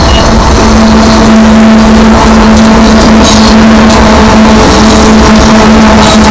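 Coal train passing close by at a grade crossing: hopper car wheels rolling on the rails, with a Union Pacific diesel locomotive in mid-train arriving near the end. A steady low hum runs under it.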